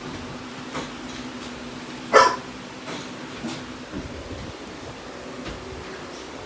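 A dog barks once, sharply, about two seconds in, over a steady low mechanical hum, with a few faint clicks around it.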